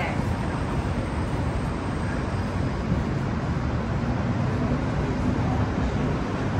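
Steady road traffic noise from cars passing on a multi-lane city street, an even low rumble of engines and tyres.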